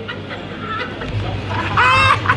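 A man's loud, high-pitched shout near the end, drawn out and crow-like, over a steady low hum that starts about a second in.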